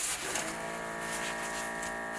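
Omron automatic blood pressure monitor's air pump running steadily, starting about half a second in, as it inflates the cuff during a check that the device works and the cuff holds air without leaking.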